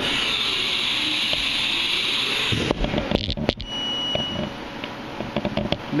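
Haas Super Mini Mill 2 automatic tool changer cycling forward to the next tool pocket: a steady hiss for about two and a half seconds, then a quick run of clunks and clicks, with a brief thin tone and a few more light clicks toward the end.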